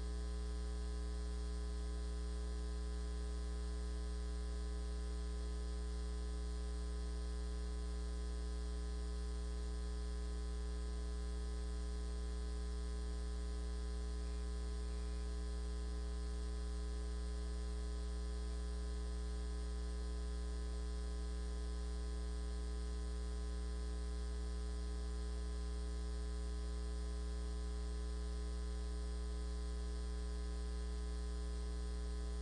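Steady electrical mains hum: a deep, constant buzz with a ladder of higher overtones, unchanging and with nothing else heard over it.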